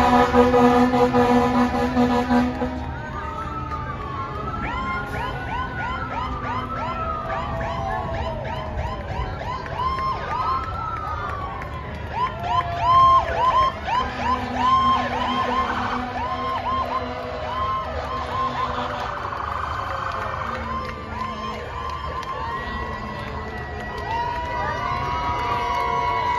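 Fire truck sirens and air horns passing close by: a long air-horn blast at the start, then several sirens wailing and yelping over one another, with more horn blasts about halfway through. Crowd noise runs underneath.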